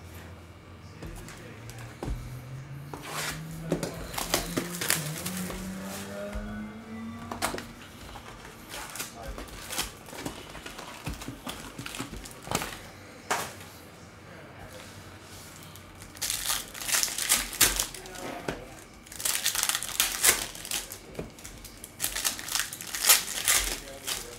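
Foil wrappers of Donruss Optic basketball card packs crinkling and tearing as they are ripped open by hand, in three dense bursts in the last third, after scattered handling clicks. A low tone rises slowly in pitch during the first several seconds.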